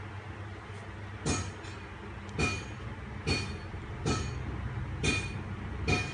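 A series of about six short clicks, roughly one a second, as an iPhone 4 is handled and brought from its lock screen to the passcode screen, over a steady low hum.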